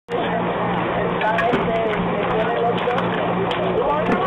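Ballpark ambience: faint, indistinct voices of players or spectators over a steady low hum.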